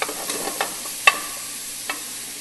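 Ground turkey and diced vegetables sizzling in a hot nonstick skillet as the meat browns, with a few sharp knocks of a wooden spoon against the pan, the loudest about halfway through.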